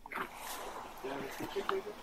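Indistinct voices of people outdoors in short, broken fragments, with scattered clicks and rustles.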